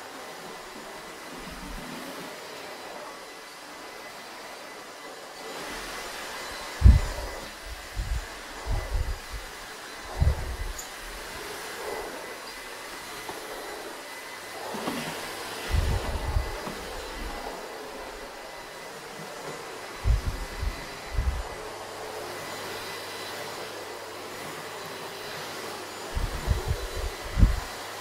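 Vorwerk Kobold vacuum cleaner with its EB370 electric brush head running: a steady rushing noise with a thin high tone, broken by clusters of brief low bumps.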